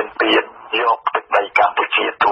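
Speech only: a news reader talking steadily in Khmer, in narrow radio-band sound.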